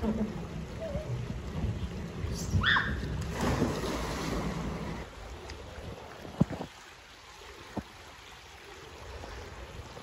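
A person going down a backyard pool water slide: a short, high, falling squeal about two and a half seconds in, then a splash into the pool lasting a second or two. After that it is quieter, with a couple of small knocks.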